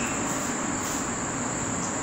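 A steady high-pitched whine over an even background hiss.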